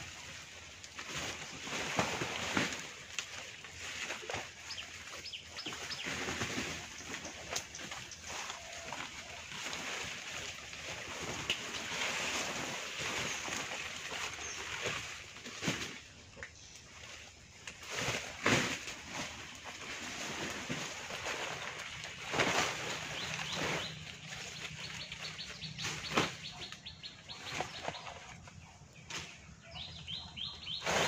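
Dry banana leaves rustling and crackling as they are pulled off a leaf-thatched shelter, with many short sharp snaps.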